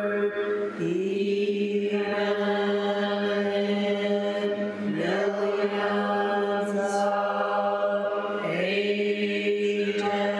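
A monk's voice chanting a mantra on one long, nearly unchanging note. The note breaks and comes back in with a short upward scoop about every four seconds.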